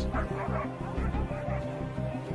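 Sled dogs barking in harness, over steady background music.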